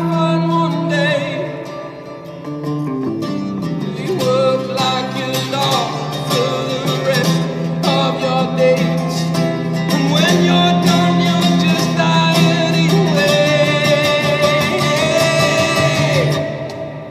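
Live band playing a pop-rock song on acoustic and electric guitars with singing, in a large stone church.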